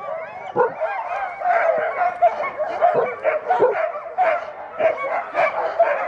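A pack of sled dogs in harness barking, yipping and whining together in a continuous, overlapping chorus of many short calls: the excited noise of teams waiting to be let go on a run.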